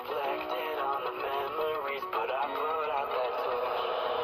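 Background music: a song with a lead vocal singing over the backing track.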